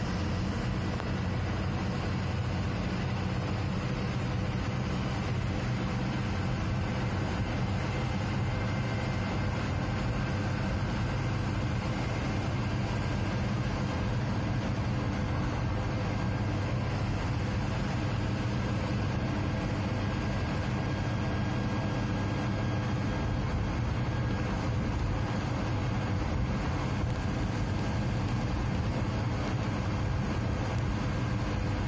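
Steady drone of an Ashok Leyland 180 HP truck's diesel engine and road noise, heard from inside the cab while cruising on the highway.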